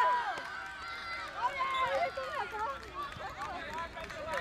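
High-pitched children's voices shouting and calling on an outdoor football pitch. A burst of cheering over a goal fades in the first half-second, leaving scattered fainter calls.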